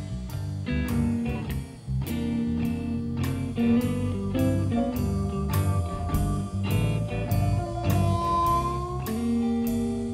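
Live band playing the instrumental opening of a song: a drum kit keeping a steady beat of about two hits a second under electric guitars, bass and keyboards. One high note bends upward about eight seconds in.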